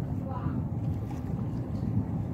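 Wind buffeting the phone's microphone in a steady low rumble.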